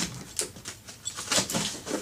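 A large cardboard box being handled: a few short scratching and scraping sounds of hands on cardboard.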